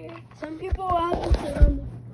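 A child's high voice talking or vocalizing without clear words, with a few dull thumps of the phone being handled and bumped, the loudest near the end.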